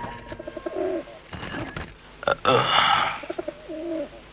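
Pigeons cooing: two short runs of low coos, one early and one near the end, with a brief rushing noise about halfway through.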